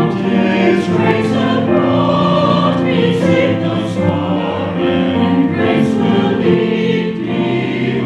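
Church choir singing a sacred piece, several voices holding sustained chords.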